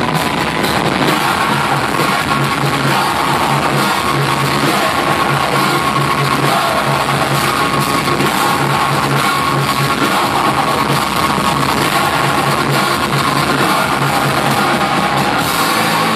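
A live heavy rock band playing loudly and continuously: distorted electric guitars, bass and a drum kit, heard from within the audience.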